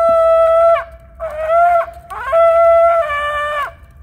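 A boy blowing a shofar (ram's-horn trumpet), three loud blasts. The first is a long steady note that dips at its end, the second is shorter and wavers in pitch, and the third holds steady, then jumps up in pitch and cuts off near the end.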